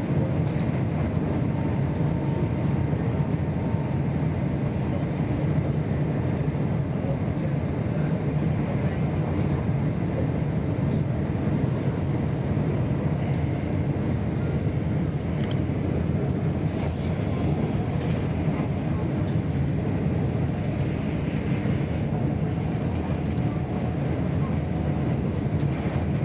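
Steady low rumble of a GWR Class 802 train running at speed, heard from inside the passenger coach: wheels on rail and running noise at an even level, with a few faint ticks.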